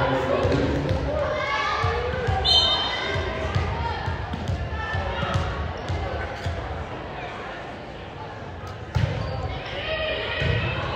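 Voices of players and spectators calling and chatting in a large echoing gym, with repeated dull thuds of a volleyball on the wooden floor. A single sharp smack near the end as the ball is hit to start the rally.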